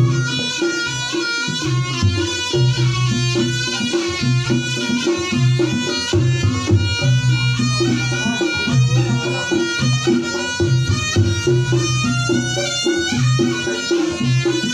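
Reog Ponorogo gamelan playing live: a wavering high wind melody over kendang drumming and a repeating pattern of low gong tones.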